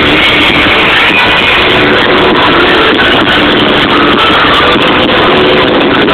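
A live rock band with electric guitar, heard loud through a concert PA. The recording is overloaded and muddy, with held notes over a dense, steady wash of sound.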